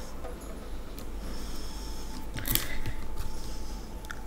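Soft crinkling and rustling of a plastic-wrapped box being turned over in the hands, with a louder short crackle about two and a half seconds in.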